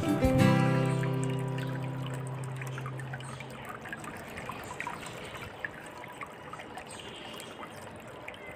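A music sting whose last low note holds and fades out over the first few seconds, then the steady trickle of a small tabletop water fountain, with light clicks of scissors snipping dried chili peppers.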